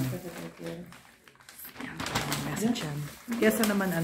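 Low voices murmuring and speaking briefly in a small room, with a short lull just before the middle.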